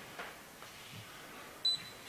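A single short, high electronic beep about one and a half seconds in, over quiet room tone.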